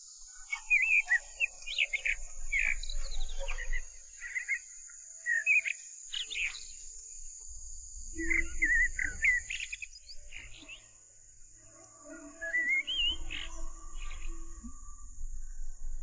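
Wild birds chirping and calling in quick, scattered phrases over a steady high-pitched insect drone.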